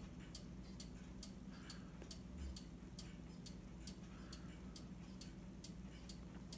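Faint, evenly spaced ticks, about two a second, over a low steady hum.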